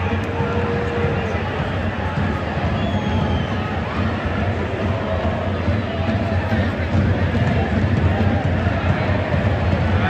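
Football stadium crowd, a steady mass of fans' voices from the stands with occasional individual shouts rising above it.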